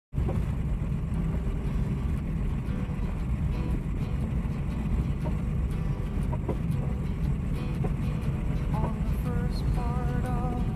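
Steady low rumble of a car driving on an unpaved road, heard from inside the cabin: tyre and engine noise at an even level. A few faint pitched sounds come in near the end.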